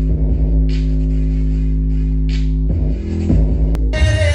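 Bass-heavy electronic music played through a Sony D100 4.1 home theatre speaker system and its subwoofer, with deep held bass notes that change near the end.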